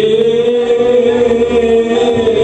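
Worship music: a singer holds one long sung note over the band's sustained accompaniment.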